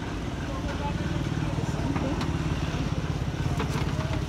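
A vehicle engine running steadily, a low even rumble, with a few light metallic clinks of aluminium pots being handled, about two seconds in and again near the end.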